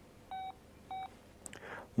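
Motorola MicroTAC mobile phone's keypad beeping as digits are keyed in: two short beeps about half a second apart, each a single steady tone.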